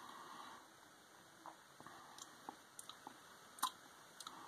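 Faint mouth sounds of a person tasting beer: a soft breath, then scattered small lip smacks and tongue clicks, the sharpest one near the end.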